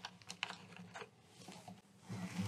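Faint handling noise from an acoustic guitar: a handful of light, irregular taps and clicks as hands settle on the instrument before strumming.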